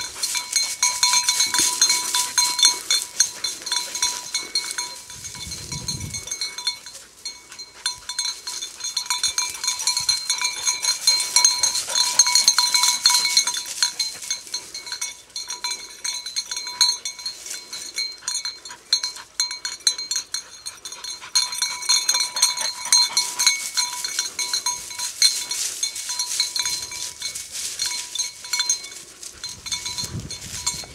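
A small bell on a hunting dog's collar jingling rapidly and without a break as the setter moves through cover, dropping out briefly about seven seconds in. Its continuous ringing shows the dog is on the move rather than standing on point.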